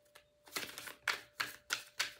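A deck of tarot cards shuffled in the hands: a quick run of short papery strokes, about a third of a second apart, starting about half a second in.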